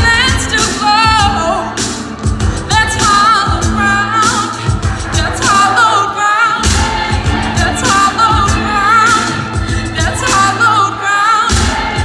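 Live pop band with a woman singing lead into a microphone, her melody wavering with vibrato, over regular drum hits and a steady bass.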